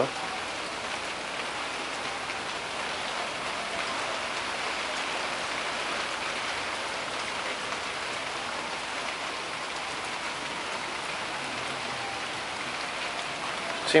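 Steady fizzing crackle of concentrated nitric acid boiling as it dissolves a copper penny, giving off nitric oxide gas.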